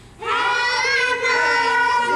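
A group of children singing together in long held notes, coming in a moment after a brief pause.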